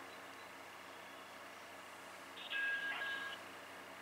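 Faint hum of an open phone line on speaker, broken about two and a half seconds in by a short electronic tone, under a second long, as an outgoing call goes through.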